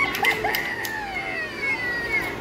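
Animated Halloween witch prop playing its recorded voice: a high-pitched, wavering call whose long notes slide slowly downward.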